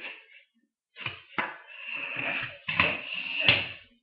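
Plastic Lego minifigures being handled and moved across a countertop: scraping and handling noise with three sharp knocks, the last near the end.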